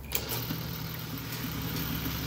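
Industrial bartack sewing machine motor running without stitching: a click just after the start, then a steady low hum with a faint high whine.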